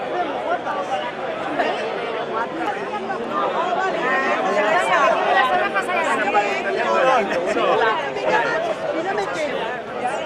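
Crowd chatter: many people talking at once, their voices overlapping, busiest around the middle.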